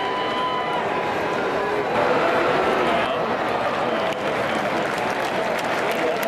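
Baseball stadium crowd: many voices talking and shouting at once in a steady din, swelling slightly about two seconds in.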